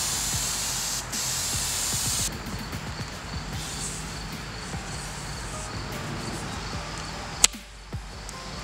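3M Super 90 spray adhesive hissing out of its aerosol can in two bursts with a short break, stopping about two seconds in. A single sharp click comes near the end.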